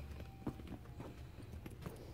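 Footsteps at a walking pace, about two a second, over a low steady hum.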